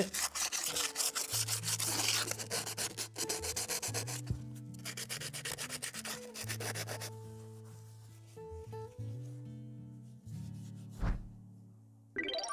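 Sandpaper rubbed by hand over the painted metal housing of a hydraulic drive motor in quick back-and-forth strokes, scuffing the old paint so a new coat will stick. The sanding pauses briefly about four seconds in and stops about seven seconds in.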